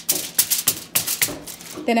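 Aluminium foil crinkling and crackling in irregular bursts as gloved hands press and shape a ground-beef patty on it. A woman starts speaking near the end.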